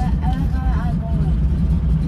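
Floatplane engine and propeller running steadily, heard as a loud, even drone inside the cabin while the plane moves on the water.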